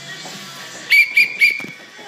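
A coach's whistle blown in three quick blasts, starting about a second in, the last blast held a little longer. Background music plays underneath.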